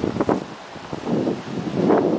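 Wind buffeting the microphone in a few gusts, over the wash of sea surf breaking on the rocks.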